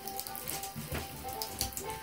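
Bath tap running into a tub, the water spattering with many small splashes, while a steady thin tone comes and goes.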